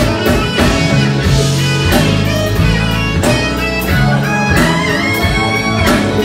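Live band playing an instrumental passage: electric guitars over a bass guitar line and a drum kit, with steady repeated low bass notes and regular drum hits.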